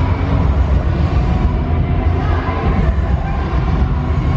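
Steady low rumble with an even hiss above it: the background din of a large exhibition hall.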